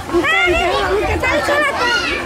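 Young children's high-pitched voices chattering and calling out, several at once.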